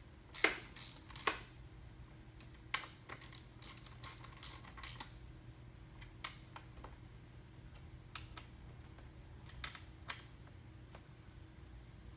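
Bolts on a dirt-bike ski mount's fork clamp being tightened with a hand tool: faint, irregular small metallic clicks, bunched in the first five seconds and sparser after.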